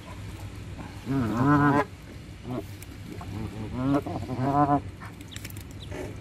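Canada geese calling close by: two longer calls with a wavering pitch, one about a second in and one near four seconds, with a short call between.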